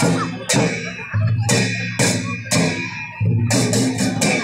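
Live drum music for a folk dance: a double-headed drum struck in rhythm with ringing strikes. The beats are dense at first, thin to about two a second through the middle, and come close together again near the end.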